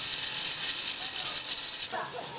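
Coal fire burning under a large iron cauldron: a steady, dense crackling hiss.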